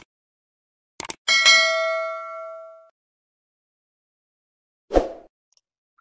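Sound effect for a subscribe-button animation: two quick clicks about a second in, then a bright bell ding that rings out and fades over about a second and a half. A short dull thump comes near the end.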